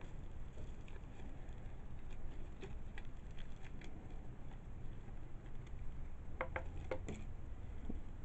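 Hands working at a tied bag to open it: a low handling rumble with scattered light rustles and ticks, and a quick run of sharper clicks near the end.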